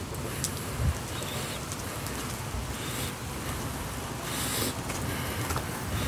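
Steady low rumble and hiss of background noise picked up by a phone microphone, with one short bump just under a second in.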